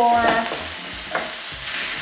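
Chicken breast chunks sizzling as they sauté in hot oil in a pot, stirred with a wooden spoon: an even, steady hiss.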